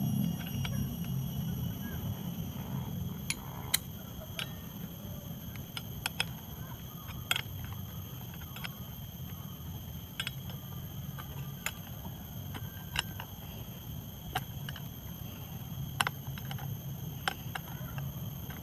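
Scattered sharp metallic clicks and taps from a socket wrench working the retaining nut of a circular toothed brush-cutter blade on its gearbox shaft as the blade is tightened down, about a dozen at irregular intervals over a steady low background rumble.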